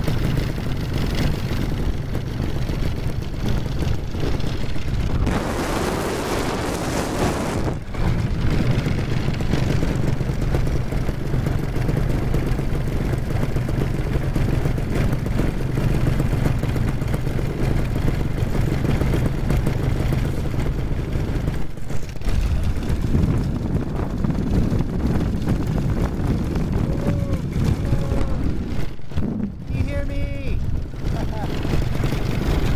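Paramotor's Solo two-stroke engine running steadily in flight, a constant low drone. About five seconds in, a louder rush of noise lasts about two seconds.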